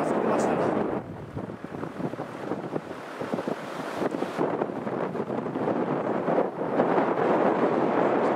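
Strong blizzard wind buffeting the microphone, a dense gusting rush. It dips about a second in and builds again toward the end.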